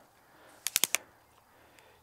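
Four quick, sharp clicks from the 3 Legged Thing Jay tripod's telescoping legs being adjusted, a little under a second in.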